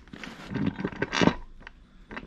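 Clear plastic bag around a metal mounting bracket crinkling as it is handled, in a few short bursts with light clicks, the loudest about a second in.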